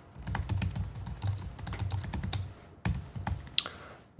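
Typing on a computer keyboard: a quick run of keystrokes for about two and a half seconds, then a few scattered keystrokes.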